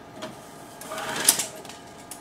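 Microfilm reader rewinding the film: a steady motor hum, with a rising whir that peaks in a sharp clack about a second and a quarter in.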